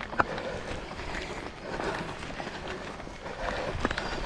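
Footsteps of several runners on a road, with a few sharp clicks near the start and again near the end.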